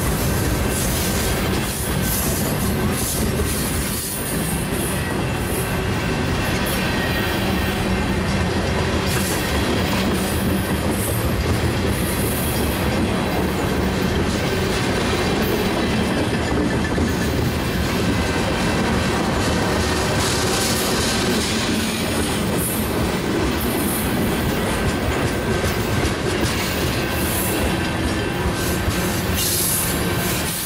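Freight train tank cars rolling past close by at steady speed: continuous rumble and rattle of steel wheels on rail, with clickety-clack from the trucks and a thin steady squeal above it.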